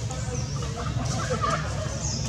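Short, scattered calls, like a bird's clucking, over a steady low rumble.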